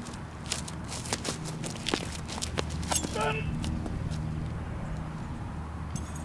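A hammer thrower's shoes scuff and click on a concrete throwing circle through his turns, many sharp irregular clicks over about two and a half seconds. About three seconds in comes a short shout at the release.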